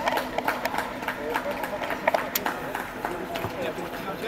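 Players' voices carrying across an outdoor football pitch, with scattered sharp taps and knocks of running footsteps on the turf.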